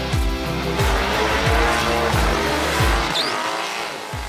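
Burnout: a Weiand-supercharged 5.3-litre iron-block LS V8 running hard with the rear tyres squealing, under rock music with a steady kick-drum beat. The music stops about three seconds in.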